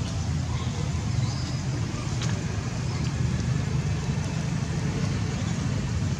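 Steady low rumble with a faint hiss above it, unchanging in level, and a couple of faint clicks.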